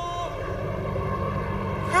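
Outdoor street ambience with a steady low rumble of traffic under a general hum. A held music note cuts off just after the start.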